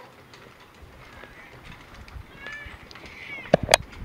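Wheeled casket cart being pushed out through a doorway: a few faint squeaks in the second half, then several sharp clunks near the end.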